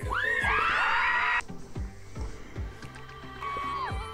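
Live pop music over a steady deep bass-drum beat, with a burst of fans screaming in the first second and a half that cuts off suddenly.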